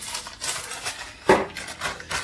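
Small plastic bag of stainless steel screws being handled: plastic crinkling and light metallic clicks of the screws, with one sharper click about 1.3 seconds in.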